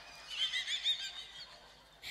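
A high-pitched, quavering laugh lasting about a second, fainter than the speech around it.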